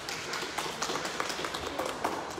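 Applause: a dense, irregular run of hand claps.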